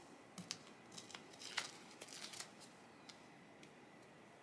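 Tear-away embroidery stabilizer being picked and torn off the back of the stitching, heard as a series of faint short paper rips and crinkles at irregular intervals.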